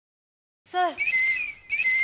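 A man whistling through pursed lips: a breathy, steady high note that starts about a second in, breaks off briefly and starts again. Each blow opens with a short waver in pitch.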